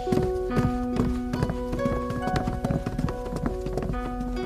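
Background music with long held notes, over a quick run of irregular footsteps as several people walk away across the floor.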